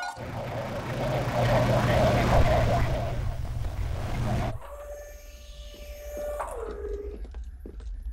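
Sci-fi spaceship sound effect: a low rumble with a rushing noise that swells and fades over about four seconds. Quieter electronic tones follow, gliding up and down and ending in one falling tone, with a few light knocks near the end.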